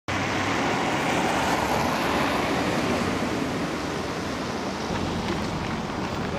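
City street traffic noise: a steady, even hum of road traffic that eases slightly toward the end.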